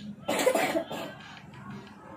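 A person coughing once: a short, harsh burst about a quarter of a second in.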